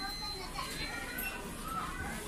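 Indistinct chatter of shoppers' voices in a busy shop, children's voices among them, with a faint steady high-pitched tone early on.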